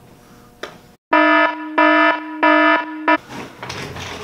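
A harsh electronic buzzer tone sounding in three loud pulses of about half a second each, then a short final blip before it cuts off suddenly.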